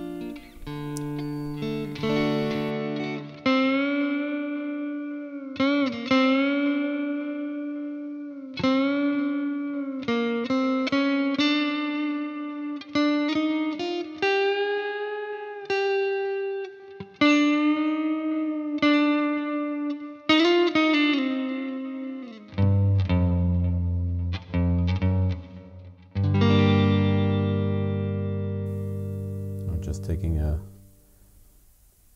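Electric guitar playing a melodic lead line of single sustained notes with string bends and vibrato, then switching to ringing low chords about two-thirds of the way through.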